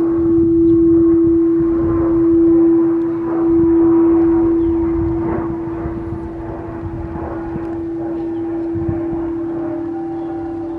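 Quartz crystal singing bowl sung by rubbing a mallet around its rim: one steady, low sustained tone with faint higher overtones. Its loudness swells and fades in slow waves over the first half, then holds even, and a second, slightly lower bowl tone joins near the end.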